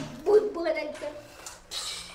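Indistinct speech: short spoken fragments in a small room.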